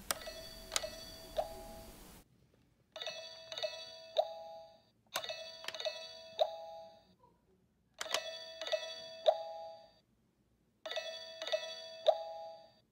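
Orange Teletubbies toy phone playing its electronic ringing chime: a short group of three beeping notes, repeated five times about every two and a half seconds.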